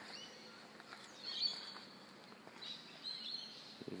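Birds chirping: two short runs of high chirps, about a second and a half in and again near the end, over a faint steady outdoor hiss.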